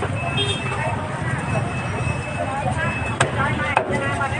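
Busy street-market ambience: a steady low rumble of motor traffic under people's voices talking, with two sharp knocks near the end.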